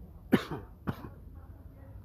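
A person coughing twice, about half a second apart, the first cough louder.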